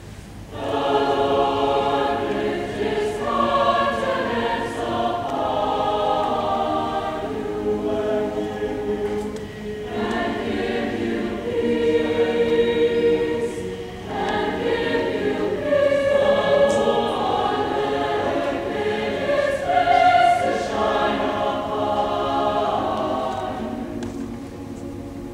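A mixed choir of graduating students singing together in sustained phrases, with brief breaths between phrases about ten and fourteen seconds in.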